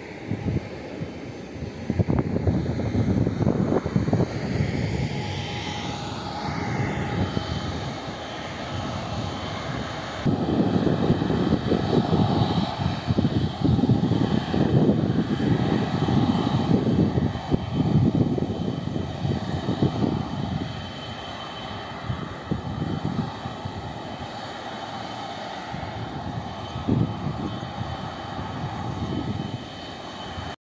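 Twin-engine widebody jet airliner landing, its engine noise carrying a whine that falls in pitch about six seconds in. This gives way to the steady rush of the jet rolling out along the runway, with gusty wind rumbling on the microphone.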